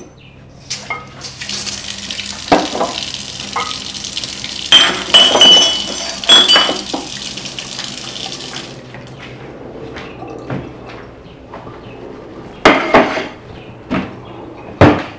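Kitchen tap running for about seven seconds while ceramic cups and a plate clink against each other, then a couple of sharp knocks near the end as a cupboard door is handled.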